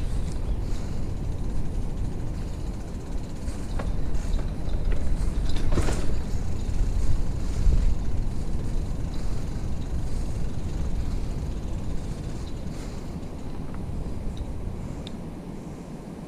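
Bicycle wheels rolling over a rough dirt path, a steady low rumble with a few light clicks, growing quieter near the end as the bike slows.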